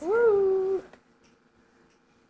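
Baby vocalizing: one drawn-out 'aah' of under a second, rising at the start and then held on one pitch.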